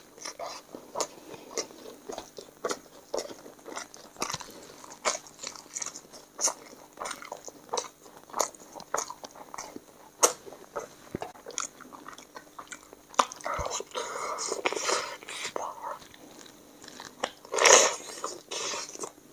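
Close-miked eating sounds of a person chewing handfuls of chicken biryani rice and curry gravy: wet chewing with many short lip smacks and clicks, and two louder, longer bursts of mouth noise in the second half.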